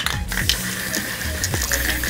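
Aerosol can of glitter silver spray paint hissing as it runs out, under background music with a steady beat.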